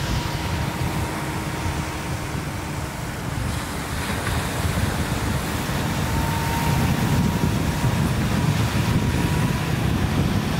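Ocean surf washing onto the beach, with wind rumbling on the microphone; the rumble grows louder about halfway through.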